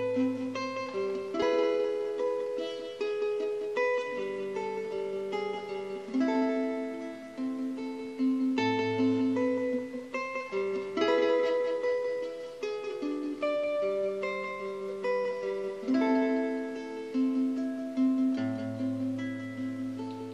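Nylon-string classical guitar played fingerstyle, a solo intro of picked, arpeggiated notes in A minor with bass notes under the melody.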